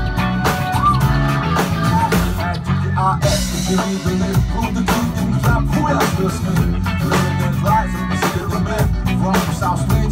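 Live band playing a funk groove together: drum kit keeping a steady beat, electric bass and electric guitar, with a bright cymbal crash about three seconds in.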